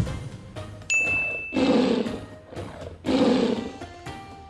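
A bright ding about a second in, followed by a tiger roar sound effect twice, each roar about a second long, over background music.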